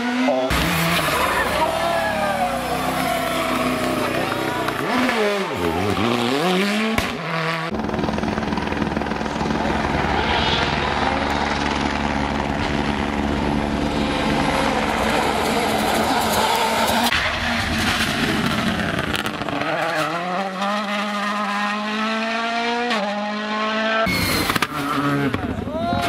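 Rally cars' turbocharged engines revving hard as they pass, the pitch climbing and dropping through gear changes, in several short clips cut one after another. In the middle stretch the engine sound is steadier and rougher.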